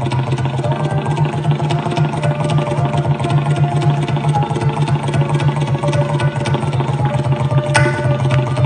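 Tabla solo: a fast, dense run of strokes on the tabla, with the bayan's deep bass ringing on underneath. A sarangi plays sustained melodic accompaniment.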